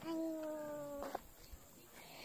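A person's voice holding one long sung or drawn-out note for about a second, its pitch sinking slightly before it stops.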